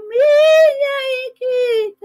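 A woman singing a cappella in a high voice with vibrato: a long held note that swoops up at the start, a brief break, then a shorter, slightly lower note.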